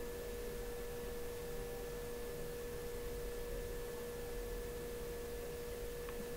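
A steady, faint, high-pitched hum: one unchanging tone with a fainter, higher tone above it, over light background hiss.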